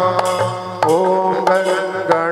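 Live devotional bhajan: a man singing over a steady low drone, with a drum beat about every two-thirds of a second and a crowd clapping along.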